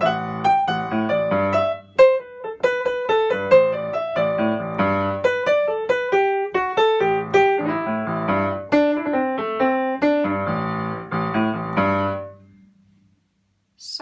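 Piano improvisation: a right-hand melodic line in the A Dorian mode over the left-hand bass riff of a funky jazz-blues tune. The playing stops about a second and a half before the end, leaving a short near-silent pause.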